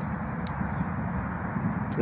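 Steady low rumble of distant engine noise, with a single faint click about half a second in.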